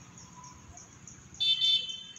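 Two short, high beeps in quick succession about a second and a half in, over a faint low rumble.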